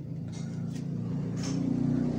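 A motor vehicle's engine rumble, low and growing steadily louder as it approaches.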